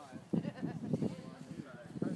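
Indistinct voices of people talking close by, wavering in pitch, with no words made out.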